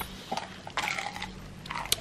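Yellow Labrador chewing a breaded chicken dipper: quiet, scattered crunches and mouth clicks.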